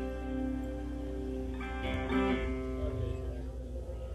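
Guitar chords struck and left to ring, with a fresh chord about two seconds in: loose playing between songs rather than a song underway.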